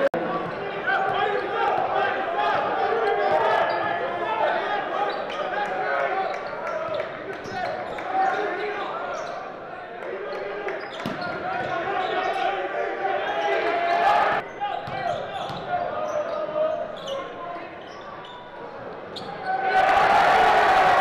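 A basketball dribbling and bouncing on a gym's hardwood court, with a steady murmur of crowd voices in the echoing hall and a few sharper thuds.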